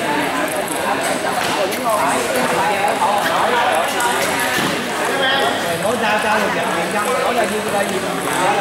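Hubbub of many voices in a sports hall, with the light knocks of a table tennis ball striking paddles and table during a rally.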